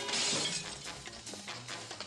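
A sudden shattering crash at the start, dying away within about half a second, then scattered clinks of falling pieces, with music underneath.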